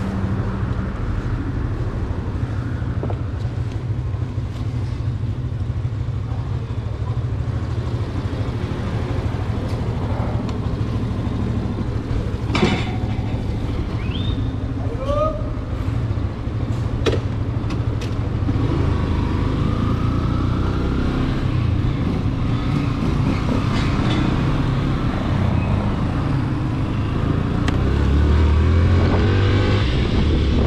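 Motorcycle engine running with a steady low hum, with a few sharp clicks around the middle; near the end it grows louder as the bike pulls away.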